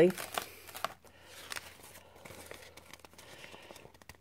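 A paper napkin stiffened with dried white glue crinkling and rustling softly in scattered bursts as it is lifted off the craft mat and flexed by hand.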